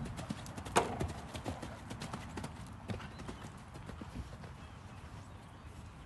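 A cantering horse's hoofbeats on sand arena footing. The strikes are closely spaced, loudest about a second in, and grow fainter and sparser as the horse moves away.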